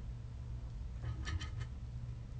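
Low steady hum with a quick run of three or four faint clicks a little after a second in.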